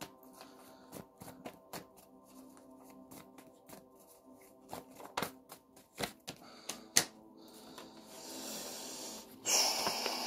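A deck of handwritten paper cards being shuffled by hand: irregular soft flicks and snaps of card on card, then a longer papery rustle near the end as a card is pulled out. Faint background music with steady held tones runs underneath.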